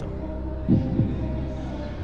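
Game-show suspense effect: a low, throbbing heartbeat-like pulse over a steady hum, played while the contestants think over a true-or-false answer. There is a brief low murmur from a contestant just under a second in.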